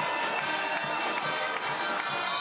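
Music with held, sustained tones playing after a goal, over faint crowd noise.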